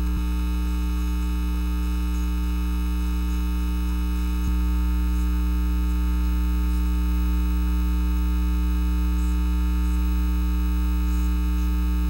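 Steady electrical mains hum with a stack of harmonics on the recording's soundtrack, with a faint click about four and a half seconds in, after which it is slightly louder.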